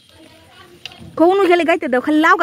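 Speech: a high-pitched voice talking loudly from about a second in, after a quieter start with a single faint click.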